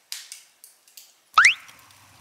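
A short, loud whistle that sweeps quickly upward in pitch, about one and a half seconds in, preceded by a few faint hissy crackles.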